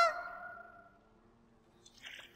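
A girl's drawn-out cry, held on one pitch and fading away over the first second. A short hissy noise starts at the very end.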